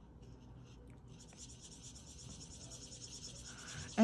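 Stampin' Blends alcohol marker rubbing on white cardstock as a small stamped image is coloured in: faint, rapid scratchy strokes that start about a second in and grow slightly louder.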